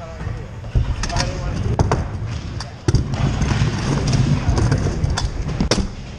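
Kick scooter wheels rolling over skatepark ramps: a low rumble, heaviest in the middle and later part, broken by several sharp knocks as the wheels and deck hit ramp edges and transitions.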